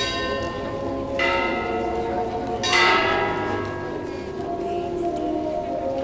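A large bell, such as a church bell, struck three times about one and a half seconds apart, each stroke ringing on and slowly fading.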